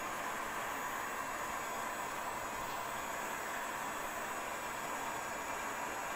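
Handheld electric heat gun running steadily: an even hiss of its fan blowing hot air onto denim.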